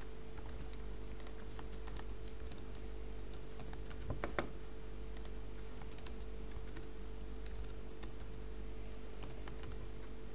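Typing on a computer keyboard: irregular quick key clicks, with a couple of heavier key strikes about four seconds in, over a steady low electrical hum.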